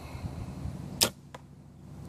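A bow shot: the string is released with one sharp snap about a second in, followed about a third of a second later by a fainter knock, the arrow striking the styrofoam bear target.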